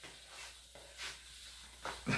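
Faint rustling of a fabric bedspread being gathered up and carried, with a few soft brief noises, the sharpest near the end.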